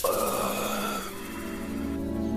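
Film score playing under a sudden rushing, whoosh-like noise that starts abruptly and fades out after about a second.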